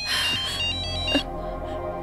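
Mobile phone ringtone, a quick repeating electronic melody, cutting off a little over a second in, over a soft dramatic music score.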